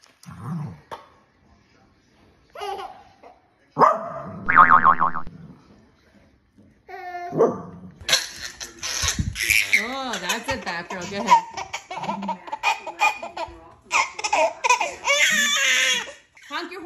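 A baby laughing and squealing, with adults laughing along. There are only a few short sounds in the first half, and almost continuous laughter from about halfway on.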